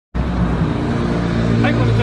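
A steady low mechanical hum that starts abruptly just after the opening, with a man's voice beginning near the end.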